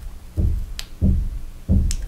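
Dull low thumps at a steady pace, about three every two seconds, with two faint sharp clicks of small Lego plastic pieces being worked into place.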